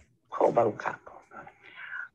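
An elderly woman's voice from an old television recording, played back over a video call, speaking in Hawaiian; a higher drawn-out tone comes near the end.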